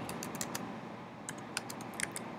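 Typing on a computer keyboard: two short runs of key clicks, one at the start and another past the middle.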